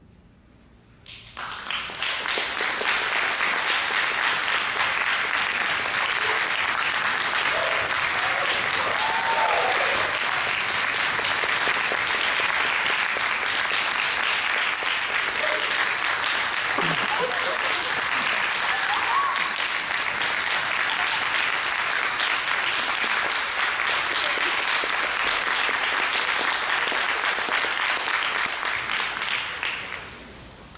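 Concert audience applauding: after a brief silence, clapping starts about a second in and holds steady, with a few voices calling out, then tails off near the end.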